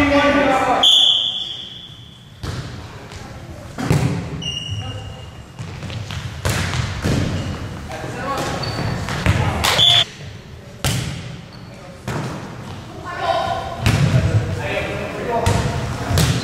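Volleyball rally in a gym: a string of sharp ball hits echo in the hall, with players and spectators calling out between them. A short high-pitched tone sounds about a second in and again near ten seconds.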